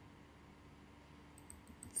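Faint room tone, then a quick run of computer mouse clicks in the last half second, picking and opening an image file.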